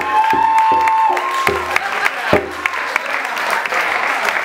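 Audience applause, with one long cheer held for about a second near the start and a few heavier thumps in a loose beat over the first couple of seconds.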